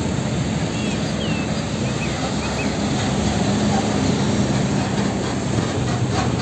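Isuzu fuel tanker truck's diesel engine running as the truck approaches and passes close by, with steady tyre and road noise.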